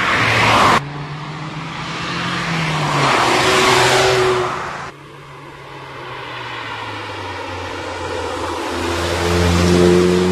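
Mazda MX-5 roadster driving past, its engine and road noise swelling as it nears. The sound cuts off suddenly about a second in and again about five seconds in. Near the end the engine note grows louder.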